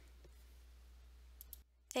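Quiet room tone with a low steady hum, a few faint clicks about a second and a half in, then a brief drop to dead silence at an edit just before a voice begins.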